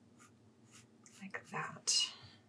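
Pencil sketching on paper: faint, scratchy strokes, then a louder, hissier scratch near the end.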